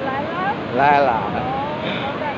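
Steady noise of ocean surf and wind on the microphone, with a voice speaking briefly over it about a second in.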